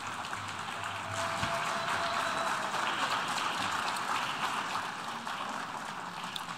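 Audience applauding: many hands clapping in a dense, even patter that swells about a second in and eases slightly near the end.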